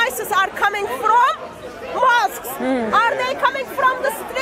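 Speech: a woman talking, with other voices chattering around her.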